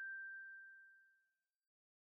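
A single bell-like chime, the last note of the closing music, ringing out as one pure high tone and dying away over about a second.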